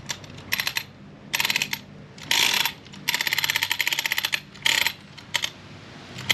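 Drivetrain of an RC buggy turned by hand through a wheel, back-driving an original (version one) Castle Creations 2200kV brushless motor: about six bursts of rapid ticking as the wheel is spun again and again, the longest about a second and a half in the middle. The sound shows the motor's rolling resistance, which the owner puts down to the cogging that the newer version reduces.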